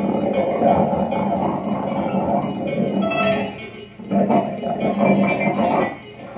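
Free-improvised experimental electronic music from a synthesizer keyboard: a dense, continuous mid-pitched texture that thins out briefly about four seconds in and again at the very end.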